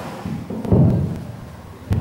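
A low, muffled thud and rumble about half a second in, then a short sharp knock near the end.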